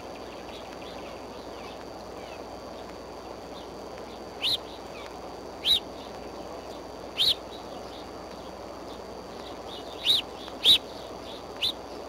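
Bald eagle giving six short, high-pitched chirping calls, spaced about a second or more apart, the loudest near the end, over a steady outdoor hiss.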